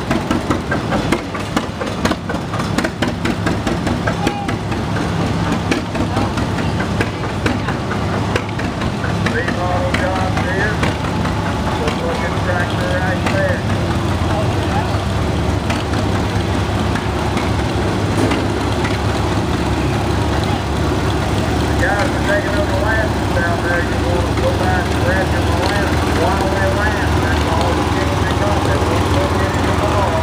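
Vintage farm tractor engines running as the tractors drive slowly past one after another, with a fast, even exhaust beat during the first several seconds, then a steadier low engine drone that grows a little louder toward the end. Crowd voices chatter in the background.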